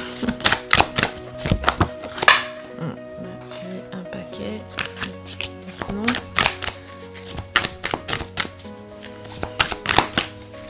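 A deck of cards being shuffled by hand, with quick irregular flicks and slaps of cards against each other and one louder slap about two seconds in. Soft background music with long held notes plays underneath.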